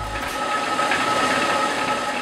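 Water-powered stone mill running: a steady grinding rush with a constant high hum through it.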